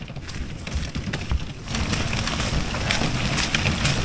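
Small wheels of a folding hand trolley loaded with bags rolling and rattling over a paved sidewalk, a rough clattering rumble that gets louder about two seconds in.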